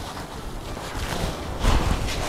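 Fabric rustling and handling noise as a long floral frock is moved and lifted, soft at first and louder near the end, with some low rubbing bumps.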